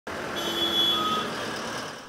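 Busy road traffic noise from buses and other vehicles, with a steady high beep for about a second near the start; the noise fades toward the end.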